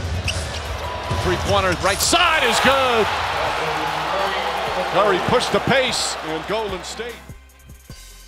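Basketball game sound on a hardwood court: short sneaker squeaks and ball bounces over arena crowd noise. About seven seconds in it drops much quieter.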